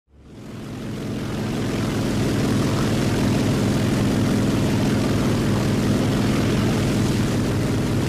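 Piston engine of a single-engine propeller fighter plane droning steadily in flight, fading in over the first couple of seconds.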